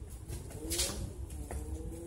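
Pigeon cooing: a low coo that wavers up and down in pitch, with a brief scuff a little under a second in.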